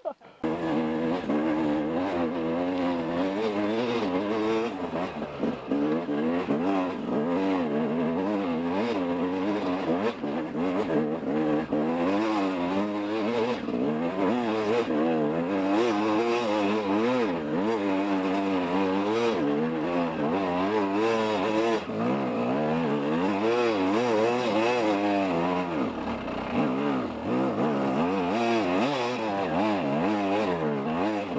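Dirt bike engine being ridden over rough bush ground, its revs rising and falling constantly with the throttle. The engine comes in just after a brief quiet moment at the start.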